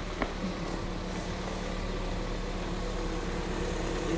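Toyota MR-S's 1ZZ-FE 1.8-litre four-cylinder engine idling steadily. The owner feels it sounds a little milder since a molybdenum oil additive went in. There is one sharp click shortly after the start.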